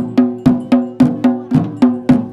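Drums slung at the waist and beaten with sticks in a steady, even rhythm of about four strokes a second, each stroke leaving a short ringing tone.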